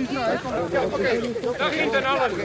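Several people talking at once outdoors: an overlapping chatter of voices from a crowd.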